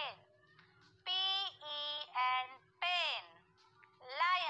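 A high, pitched-up, child-like voice chants a quick run of four short syllables, starting about a second in, over a faint steady hum.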